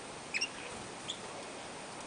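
Canaries giving short, high chirps: a quick pair about a third of a second in and a single shorter one about a second in, over a steady hiss.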